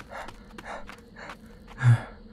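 A man panting, out of breath, with quick breaths about twice a second and one louder, heavier gasp near the end.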